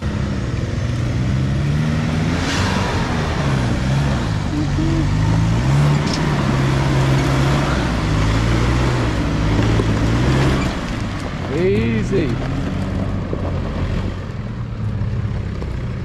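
Nissan GU Patrol 4WD engine labouring up a steep rocky hill climb, its revs rising and falling repeatedly under heavy load, over a steady noise of tyres crunching and scrabbling on loose rock.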